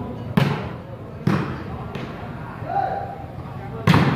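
Volleyball being struck by hand during a rally: a sharp smack about half a second in, another about a second later, a fainter touch, and a loud hit near the end. Spectators' voices murmur underneath, with a short call in the middle.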